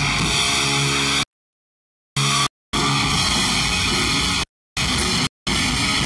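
Heavy metal band playing live with distorted electric guitar, recorded loud and flat. The sound cuts out to dead silence several times: about a second-long gap early on, then shorter breaks, typical of dropouts in the recording.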